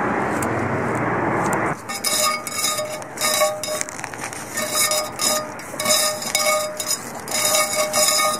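A loud, steady rushing noise that cuts off abruptly about two seconds in. After it come soft, repeated chime-like notes at a few fixed pitches, coming and going in a rhythm.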